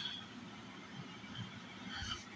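Quiet room tone: a faint steady hiss with no clear sound event, apart from a brief soft sound right at the start.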